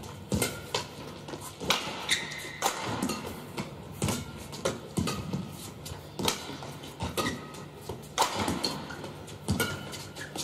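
Badminton rally: sharp racket hits on the shuttlecock, about one every second, with brief shoe squeaks and footfalls on the court between them.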